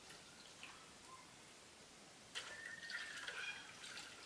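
Water poured from a plastic jug splashes into an aluminium bowl as a roasted taro is rinsed by hand. It starts a little past halfway through, after a couple of seconds of faint small sounds.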